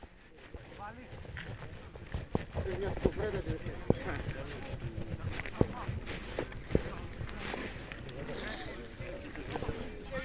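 Pitch-side sound of an amateur football match: distant shouts of players and spectators over open-air background, with several sharp knocks scattered through it.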